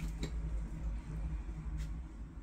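Low, steady hum with two faint clicks, one just after the start and one near the end.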